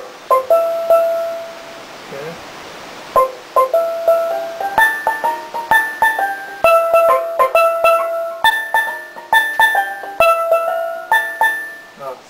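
Steel pan struck with mallets: a few ringing notes, a short pause, then from about three seconds in a quick melody of bright, ringing struck notes that runs until just before the end.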